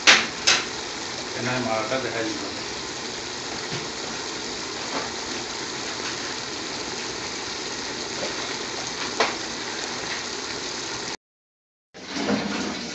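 Pot of scotch bonnet peppers simmering in oil and vinegar: a steady sizzling hiss, with a few sharp clicks near the start and again about nine seconds in, then cut off abruptly just before the end.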